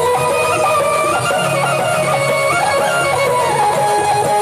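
Live bhajan band playing an instrumental passage with no singing: a quick, stepping melody in a plucked-string sound over a steady low accompaniment.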